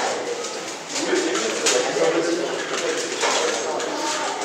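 Murmur of many people talking at once in a room, with a few sharp clicks.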